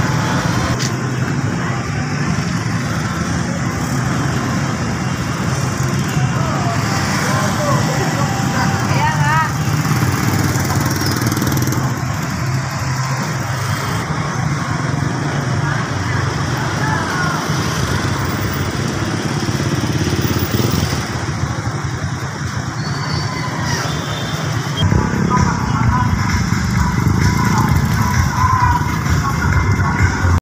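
Street traffic ambience: motorcycles and cars passing steadily close by, with people's voices around.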